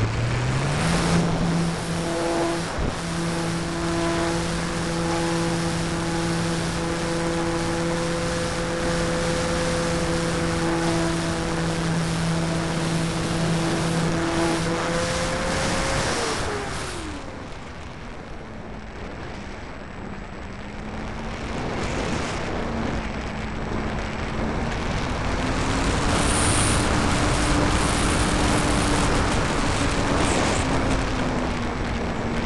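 RC Corsair warbird's motor and propeller heard from a camera on board. It spools up just after the start to a steady drone, is throttled back about halfway through, drops in pitch and goes quieter, then is throttled up again with rising pitch a few seconds before the end.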